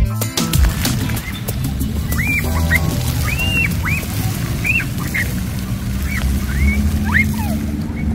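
Young children squealing while playing in a fountain's spray: about ten short, high-pitched squeals that rise and fall, over a steady low rumble. Edit music cuts off in the first half-second.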